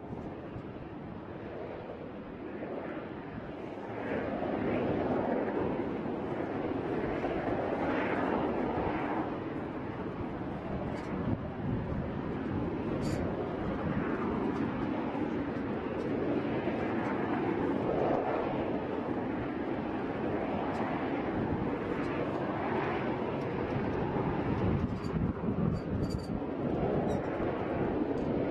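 Steady rushing noise of vapor venting around an RS-25 rocket engine on its test stand before ignition. It grows louder about four seconds in, then swells and eases every few seconds.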